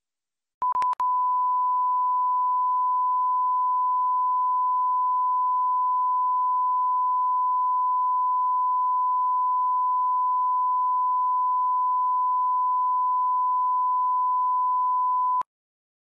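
Broadcast line-up test tone, a steady 1 kHz reference tone sent with colour bars, marking the end of the programme feed. It comes in with a brief stutter about half a second in, holds one unchanging pitch, and cuts off suddenly just before the end.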